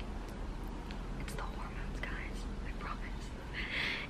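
A woman's quiet breathing and small mouth clicks during a pause in her talk, with a louder breath near the end, over faint steady room hum.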